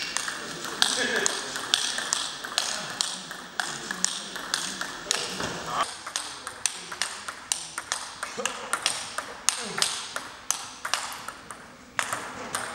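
Table tennis rally: a steady run of sharp clicks from the ball striking the bats and the table, about two to three a second, echoing in a large sports hall.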